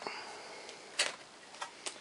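A MacBook Pro's aluminium bottom case being handled as it is taken off the laptop: a few light clicks and taps, the loudest about a second in and two smaller ones near the end.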